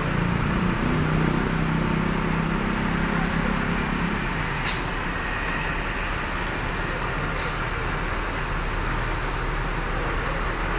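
A large intercity bus's diesel engine idling with a steady low hum, over street traffic. There are two short, high hisses of air, about five and seven and a half seconds in.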